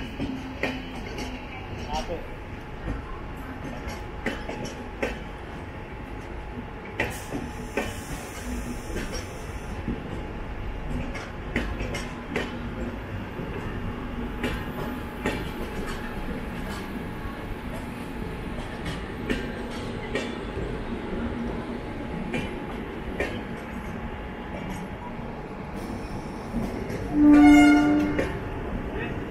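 Running noise of trains on rails, heard from the open door of a moving suburban local alongside an express: a steady rumble with irregular clicks and clatter of wheels over rail joints. Near the end a train horn sounds once, briefly, the loudest sound.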